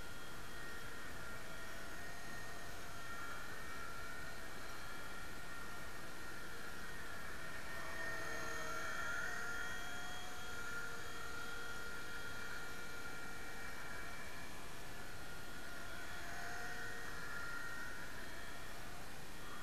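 Nine Eagles Solo Pro 270a RC helicopter's electric motors and rotor in flight: a steady whine that wavers in pitch, swelling a little about eight to ten seconds in.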